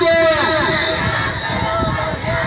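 A man chanting a protest slogan through a microphone and loudspeaker, his long held syllable ending about half a second in. After it comes the murmur of the marching crowd.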